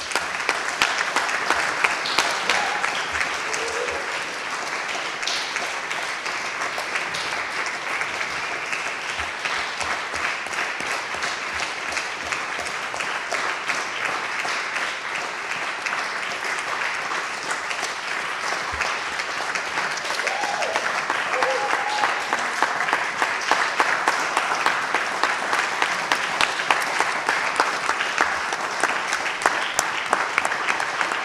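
Audience applauding, a dense steady clapping that grows a little louder over the last several seconds.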